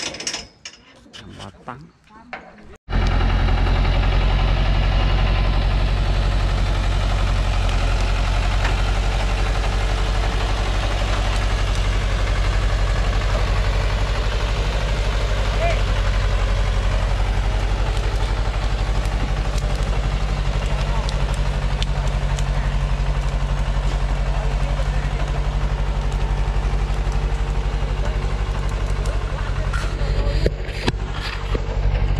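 Thaco truck's diesel engine running steadily under load as it hauls an overloaded stack of acacia logs over rough ground; the sound cuts in abruptly about three seconds in and stays low and even.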